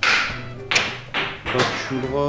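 Background music with four sharp taps over about a second and a half, each dying away quickly.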